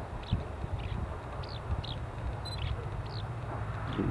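A small bird calling faintly with short, high notes that fall in pitch, about eight of them at uneven intervals, over a steady low outdoor rumble with a click about a third of a second in.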